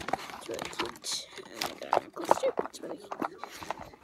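Close handling noise on a phone's microphone: a string of short clicks, knocks and rustles as a hand moves right over it, with a brief spoken "okay" near the end.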